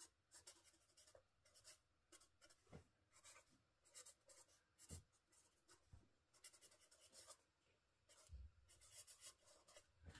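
Black marker pen writing on journal paper: faint, short scratches of the tip, one for each stroke of the letters, coming more thickly near the end.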